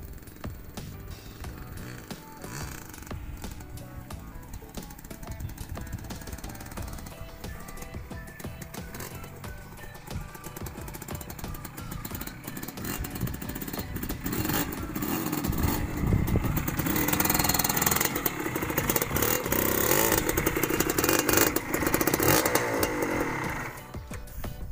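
Background music with a TS 125 two-stroke trail motorcycle engine running under it. The engine grows louder from about fourteen seconds in and stays loud to the end.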